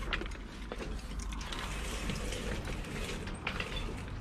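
Irregular rattling and clicking of a wheeled shopping trolley being pushed over a wooden floor, with plastic hangers clicking on a metal clothes rail.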